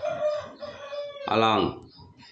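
A long animal call held at one steady pitch for just over a second, then a man's voice says a short word.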